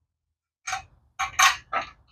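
Three short metallic clatters from a bare 5.4L V8 cast-iron engine block and its engine stand being handled, starting about half a second in.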